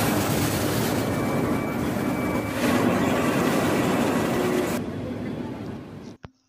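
Newspaper printing press running: a loud, steady mechanical noise with a low hum, which thins out about five seconds in and fades away near the end.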